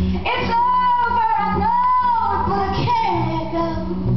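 A woman singing one long, wordless held note that bends up and down, then drops to a lower note near the end, over her own acoustic guitar.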